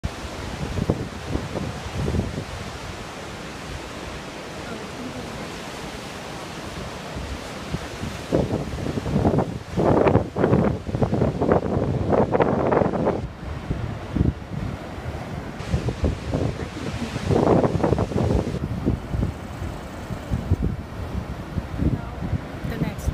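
Ocean surf washing over shoreline rocks, a steady rushing wash, with wind buffeting the microphone in rough gusts around the middle and again later on.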